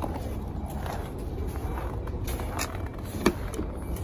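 Steady low rumble of wind and handling noise on a handheld microphone as it is carried, with a few faint clicks and one sharp knock about three seconds in.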